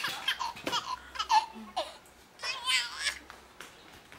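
A baby laughing and babbling in several short, high-pitched spells, dying down near the end.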